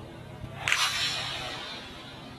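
A golf club strikes the ball on a full swing: one sharp crack about two-thirds of a second in, fading away over about a second.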